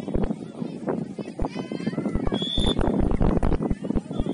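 Distant voices shouting across a youth soccer pitch as play runs upfield, over many short irregular thumps. A brief high steady tone sounds just past the middle.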